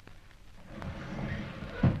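Radio-drama sound effect of a secret bookcase door released at its catch and moved open: a noisy sliding sound that grows louder for about a second, ending in a thud near the end.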